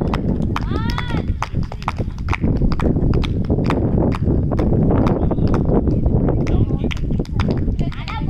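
Wind rumbling on the microphone, with a run of irregular sharp clicks and knocks, a few a second, and a short voice call about a second in.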